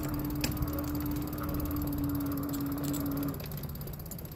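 Electric bike's hub motor whining at a steady pitch under power, over tyre and wind rumble; about three seconds in the whine cuts off as the motor stops pulling.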